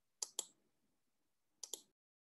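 Two quick double clicks of a computer mouse, about a second and a half apart, over a quiet room; the sound then cuts off to dead silence near the end.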